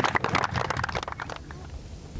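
Golf gallery applauding, the clapping thinning out and dying away within about a second and a half, leaving quiet open-air ambience.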